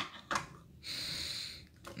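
A sharp plastic click as a flip phone is set down on the desk, a lighter knock just after, then a breath lasting just under a second.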